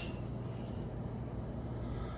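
Steady low hum of room noise, with a brief faint clink of two ceramic coffee cups touching right at the start.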